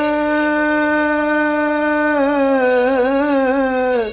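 A man singing solo, holding one long note of a Punjabi folk song. About halfway through the note begins to waver in a sung ornament, and it breaks off at the end.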